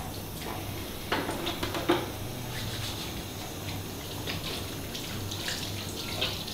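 Tap water running steadily into a hand basin while hands are washed under it, with a couple of louder splashes about one and two seconds in.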